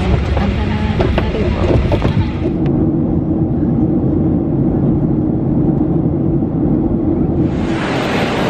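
Jet airliner cabin noise in flight: a steady drone of engines and airflow with a low continuous hum. Near the end it cuts to a brighter hiss.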